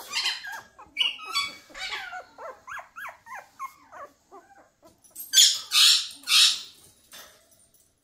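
Puppy whimpering in a rapid string of short, high cries that fall in pitch, followed by three short breathy bursts and then quiet near the end.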